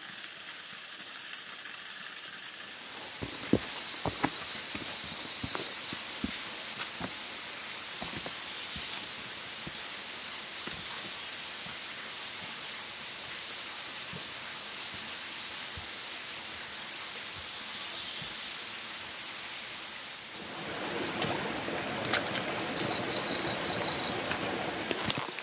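Steady rushing of a mountain stream, with scattered light knocks through the middle and a short rapid high trill near the end.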